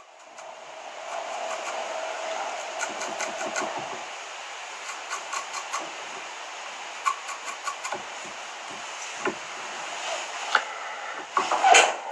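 Felt-tip permanent marker dabbing stripes onto a pinched clump of bucktail fibres, heard as a scatter of small ticks over a steady background hum. A short clatter of handling comes near the end.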